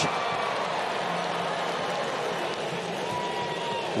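Steady noise from a baseball stadium crowd, reacting to a home run.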